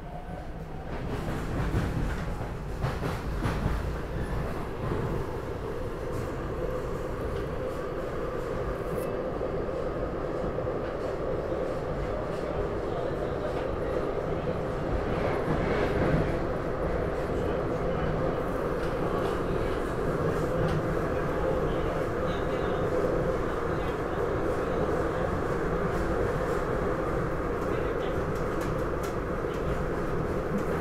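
The inside of a SEPTA Regional Rail electric train car while it is moving: a steady rumble of wheels on the track with a steady hum. It grows louder about a second in.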